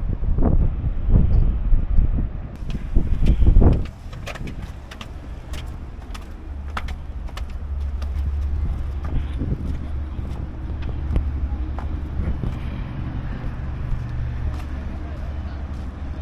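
Wind buffeting the microphone, cut off abruptly about four seconds in. Then a steady low hum of road traffic with scattered light clicks.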